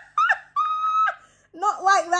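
A woman laughing in high-pitched squeals: a short yelp, then a held squeal on one high pitch, then more laughing voice near the end.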